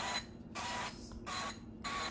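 Aerosol can of non-stick cooking spray hissing in four short bursts, about one every half second, as the cups of a metal muffin tin are sprayed one after another.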